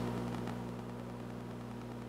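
A low, steady electrical hum with faint hiss: the background room tone of the recording.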